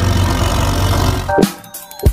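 Background music over a low rumble, then about one and a half seconds in a sharp hit and a falling sweep as the sound drops away: an edited transition effect leading into the intro.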